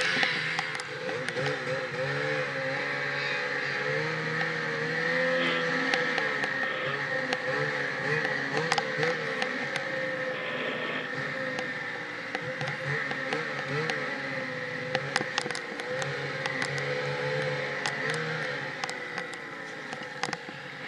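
Snowmobile engine running hard through deep snow, its pitch rising and falling as the throttle is worked, with a steady whine over it and scattered sharp ticks.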